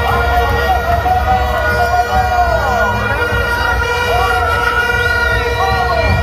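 Stadium crowd din with a steady, unbroken horn-like tone held throughout, over wavering voices and a constant low rumble.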